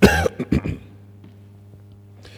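A man coughing: one loud cough, then a few shorter coughs, all within the first second.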